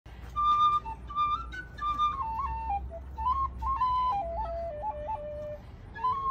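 Small flute played solo: a quick tune of short notes with little flicks between them, stepping downward in pitch and settling on a longer low note near the end.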